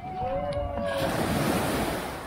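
A small wave breaking and washing up the sand of a beach shoreline, rising in a hiss about a second in and fading out. A voice is heard faintly just before it.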